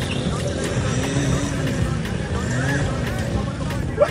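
Small motorcycle engine running hard under load, its revs rising and falling as the bike is ridden through deep mud.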